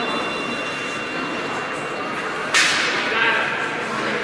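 Starting gun fired once for a race start, a single sharp crack about two and a half seconds in that rings out through the large indoor hall, over steady hall chatter.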